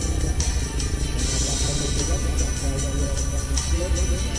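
Background music with a steady, repeating beat.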